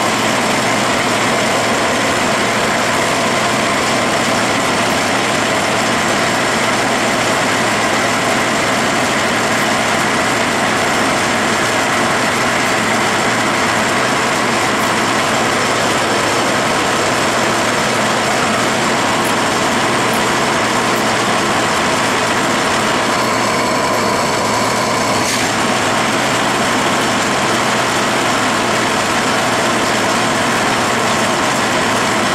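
Metal lathe running at slow speed under power feed while a pinch-type knurling tool's two opposed rollers press a diamond knurl into a one-inch bar: a steady mechanical whir with faint steady high tones. A short, brighter sound is heard about 24 seconds in.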